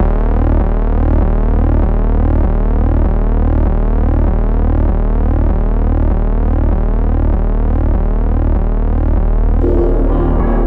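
Loud synthesized electronic tone that starts abruptly and holds steady, pulsing a few times a second with repeated rising chirp-like glides. Near the end other music with higher notes comes in.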